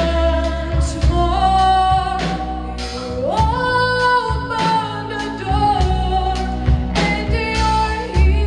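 A woman singing live with a band of keyboards, drum kit and electric guitar; her voice climbs to a long, higher held note about three seconds in.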